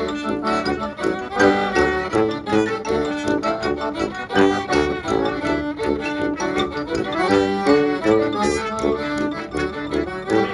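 Klezmer band playing a busy tune live, with many quick notes: accordion leading over fiddle, trumpet, xylophone and sousaphone.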